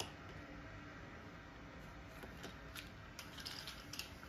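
Faint handling sounds in a quiet room: a light click as the adhesive base of a combination fridge lock is pressed onto the freezer door, then a few soft ticks and rustles as it and its cable are handled, and another small click near the end.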